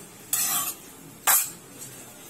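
A steel spoon stirring chopped tomatoes and onions in a stainless steel pan while the chutney cooks: two scraping strokes, the second shorter and louder, about a second apart.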